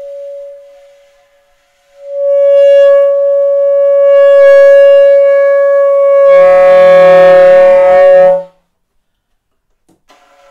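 Solo alto saxophone: the tail of a note dies away, then after a short silence one long held note sounds for about six seconds, turning rough with a lower tone beneath it for its last two seconds before it stops abruptly.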